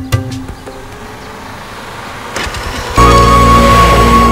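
Film soundtrack: a rhythmic music cue breaks off, followed by a quiet stretch of low motor and road noise. About three seconds in, a loud, sustained blare of held tones cuts in suddenly.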